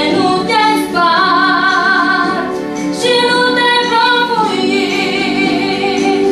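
A woman singing a slow melody in long, sustained phrases, with a wavering vibrato on the held notes, over steady held accompanying notes.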